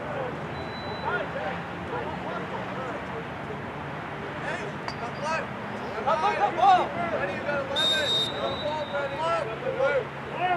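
Distant shouting from lacrosse players and the sideline, growing louder about six seconds in, with a single referee's whistle blast of about a second near the end.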